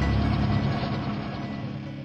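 Channel-ident sound design: a rapid mechanical ratcheting, like turning gears, that fades away steadily, with a low tone held underneath as it dies out.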